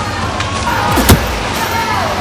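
Fight-scene sound effects: a sharp, loud strike of a wooden fighting staff landing about a second in, over a continuous dense, noisy soundtrack bed.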